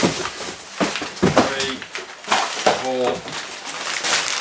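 Brown kraft packing paper rustling and crinkling as it is pulled out of a cardboard shipping box, with a few short bits of voice over it.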